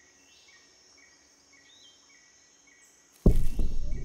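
Quiet cartoon jungle ambience with faint, short insect-like chirps repeating about twice a second. About three seconds in, a giant nut drops onto the ground with a sudden heavy thud that rumbles on afterwards.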